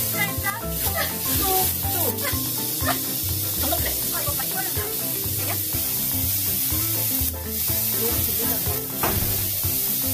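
Beef sizzling steadily as it fries, with background music playing over it.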